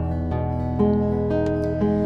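Acoustic guitar fingerpicked in a slow, gentle pattern, a new plucked note about every half second over ringing low notes.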